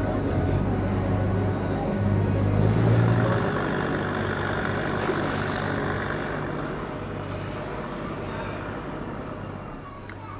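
A river boat's engine running with a steady low hum, revving up about two seconds in, then easing off and fading over the last few seconds.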